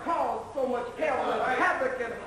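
Speech only: a man talking loudly, his pitch rising and falling steeply from phrase to phrase.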